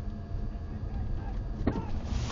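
Low, steady road and cabin rumble of a car moving slowly. Near the end a man's shout from outside the car begins.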